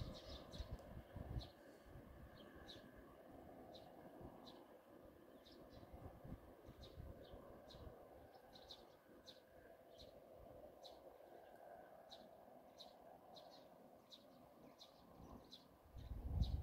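Near silence outdoors, with a small bird giving short, high chirps over and over, about one or two a second.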